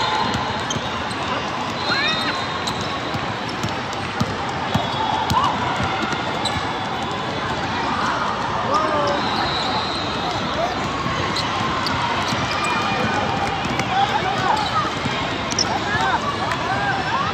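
Busy indoor basketball court in a large, echoing hall: a basketball bouncing on the hardwood floor, many short sneaker squeaks, and a steady background of crowd chatter from players and spectators.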